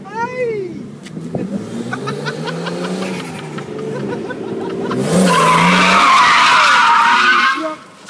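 Nissan Cefiro's RB25DET turbocharged straight-six revving up and down as the car drifts. From about five seconds in, loud tyre squeal from the sliding rear tyres takes over and cuts off shortly before the end.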